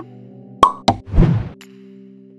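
Animated-title sound effects over steady background music: two sharp pops about a third of a second apart, just after half a second in, then a short whooshing burst.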